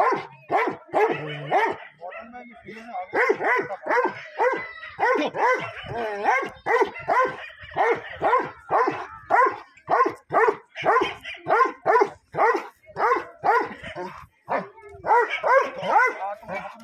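German Shepherd dog barking repeatedly, about two barks a second, with a brief pause a couple of seconds in.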